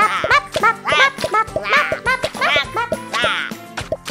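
Children's cartoon music under a quick string of short, high, squeaky character vocalizations that bend up and down in pitch, about two to three a second.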